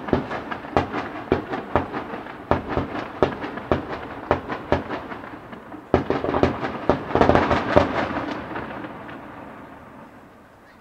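Aerial firework shells bursting in quick succession, several sharp booms a second. About six seconds in, a denser barrage of bursts starts, then dies away over the last couple of seconds.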